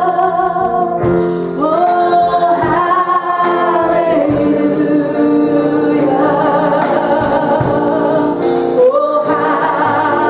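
Gospel worship song: singing voices over instrumental accompaniment, with long held notes.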